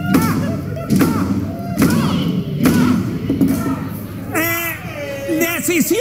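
A judge's gavel banging repeatedly on the bench, about one strike a second, with voices over it and a high shout about four and a half seconds in.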